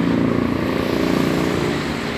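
A motor vehicle's engine runs with a steady hum over road noise, fading gradually.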